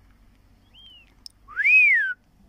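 Two whistled notes: a faint short one falling in pitch, then a loud one near the end that rises and falls in a smooth arc. A brief click falls between them.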